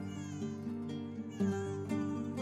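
A premature newborn baby crying in thin, high, wavering wails over soft background music.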